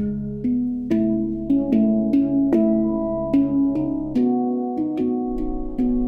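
Opsilon handpan played as a melody: struck steel notes, each ringing on with overtones, about two or three notes a second. A deep bass tone joins near the end.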